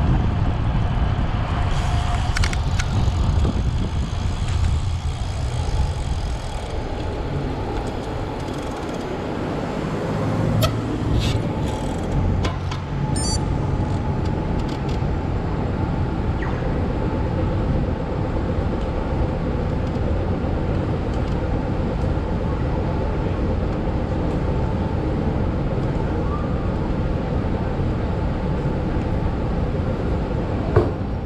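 Steady city street traffic noise heard from a bicycle on a roadside cycleway, with a few brief clicks a little before halfway.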